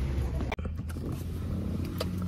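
Steady low rumble of a car heard from inside the cabin. It follows a brief stretch of shop room tone that cuts off abruptly about half a second in.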